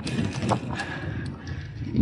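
Gravel bike rolling over a bumpy, root-lifted asphalt path: rapid mechanical ticking, typical of the rear hub's freewheel while coasting, with a few sharper knocks from the bumps over a low rumble of tyres and wind.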